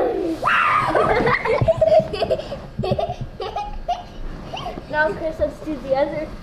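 Two children laughing and crying out as they ride a bean bag down a flight of stairs, loudest in the first two seconds, then quieter, broken laughter and voices.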